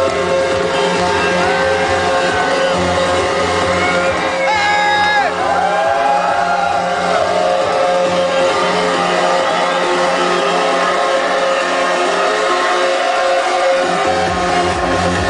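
Loud electronic dance music from a DJ set played over a club sound system. The bass and kick thin out from about halfway through and come back in full right at the end.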